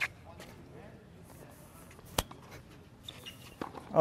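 A single sharp knock about two seconds in, over a faint, steady outdoor background.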